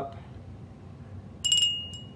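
Small ceramic souvenir bell shaken, its clapper striking a few times in quick succession about one and a half seconds in. It gives a high, bright ring that fades within about a second.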